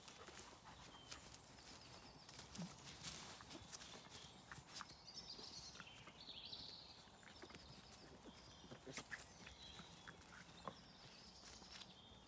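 Near silence: faint scattered clicks and taps, with a few faint, short, high-pitched chirps now and then.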